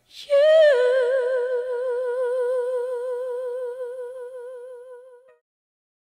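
A single voice holds one long sung note with steady, even vibrato. It slides down slightly onto the pitch at the start and cuts off a little after five seconds.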